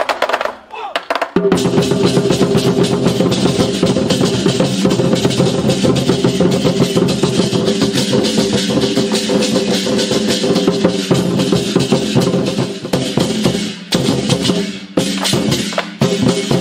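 A troupe of large Chinese barrel drums beaten together in a fast, continuous roll of strokes. The drumming starts about a second in and breaks off briefly twice near the end.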